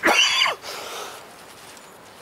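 A kitten meowing once, a short call of about half a second that rises and then falls in pitch.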